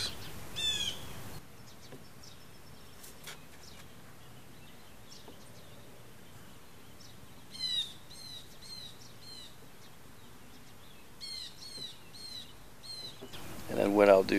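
A small bird chirping in several short runs of quick, high, downward-sweeping chirps: once about a second in, again around the middle, and a longer run near the end. Between the runs there is a faint, steady background hiss.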